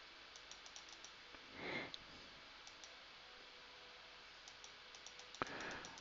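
Faint, scattered clicks of computer controls being pressed repeatedly to step from one highlighted fixture to the next in lighting-control software. A slightly sharper single click comes near the end.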